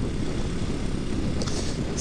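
Kawasaki dual-sport motorcycle being ridden at steady road speed: its engine running under a steady mix of wind and road noise, with no change in pitch.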